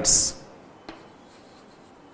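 Chalk writing on a blackboard: faint scratching with a light tap about a second in, after a brief hissing 's' that ends a spoken word.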